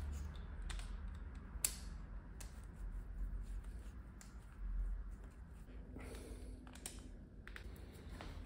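Scattered light clicks and taps of a scooter's metal throttle body and intake manifold being handled and wiped by hand during cleaning, over a low steady hum.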